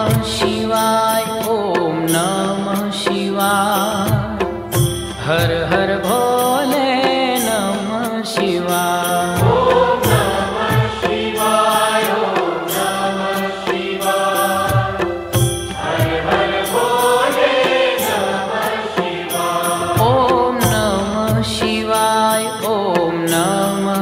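Devotional Hindu chant sung over music, with a low drum beat running underneath.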